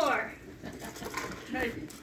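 Speech only: a voice trailing off with a falling pitch, then faint, scattered voices of a small group in a room.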